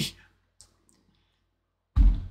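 Mostly quiet, with a faint click about half a second in, then a sudden heavy thump just before the end that dies away over about half a second.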